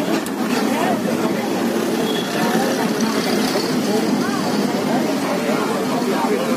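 Indistinct chatter of several passengers inside a moving bus, over the steady hum of the engine and road noise.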